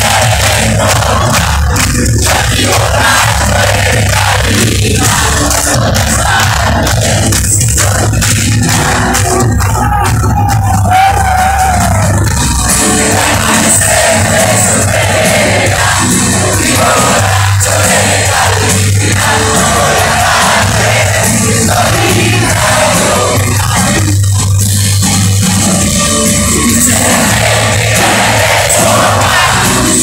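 Live rock band playing loudly on stage, heard from within the crowd, with the audience cheering and singing along.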